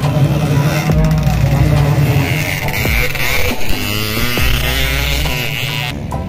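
Dirt bike engines revving at a motocross track, the pitch rising and falling, mixed with voices.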